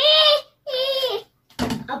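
A toddler's high-pitched voice: two short vocal sounds in the first second, then speech resuming near the end ("아빠 봐봐", "Daddy, look").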